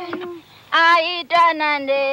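High voices singing long held notes, dropping out briefly about half a second in and then coming back strongly.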